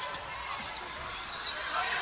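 Arena crowd noise, a steady murmur, with a basketball being dribbled on the hardwood court.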